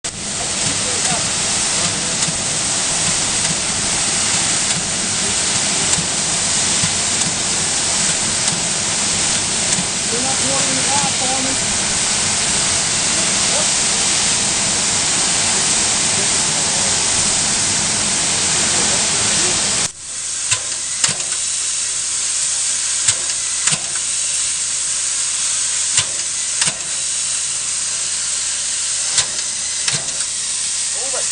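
Steam locomotive venting steam with a loud, steady hiss. About twenty seconds in, the sound changes abruptly to a thinner, higher hiss broken by scattered sharp clicks.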